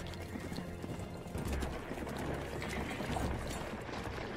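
Many clattering hoofbeats of a large body of cavalry horses on the move, over background music.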